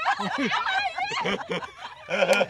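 Several people laughing and chuckling together, their voices overlapping in quick, wavering bursts.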